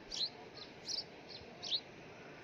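Small birds chirping: a few short, high, downward-sweeping chirps spread through the two seconds over quiet outdoor background.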